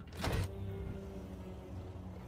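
Sound effects from the episode's soundtrack: a short loud whoosh about a quarter second in, then a steady low hum.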